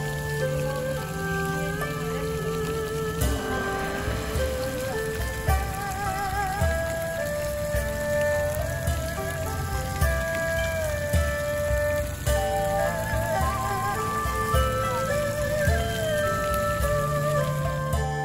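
Soft background music, a slow melody of held, wavering notes, over the steady splashing of a pond fountain.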